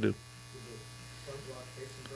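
A steady low electrical buzz in the microphone feed, with a faint voice away from the microphone underneath, in a small room.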